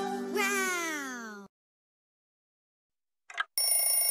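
The theme music ends on a held chord and a long falling pitch glide, followed by about two seconds of silence. Near the end, a cartoon alarm clock bell starts ringing.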